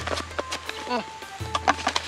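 Background music with a low steady bass and held tones. A man says a single word about a second in, with light clicks and scrapes from a cardboard box being opened by hand.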